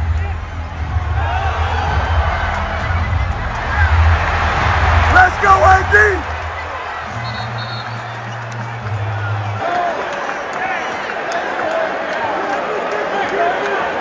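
Arena crowd noise with voices over music from the PA system, whose deep bass line changes note about seven seconds in and stops at about ten seconds. A loud shout from the crowd stands out about five to six seconds in.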